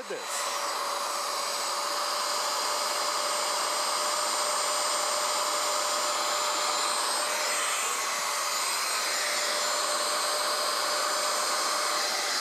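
Bissell PowerWash Lift-Off carpet washer's portable module running: a steady suction-motor whine that comes on at the very start and holds level. Its hose's hand tool is being worked over a stained fabric chair, sucking the wash water back out of the upholstery.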